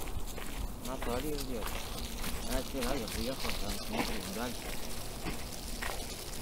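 Footsteps on a dirt track and the scuffs and knocks of a hand-held phone while walking a dog on a leash, with a faint voice talking from about a second in.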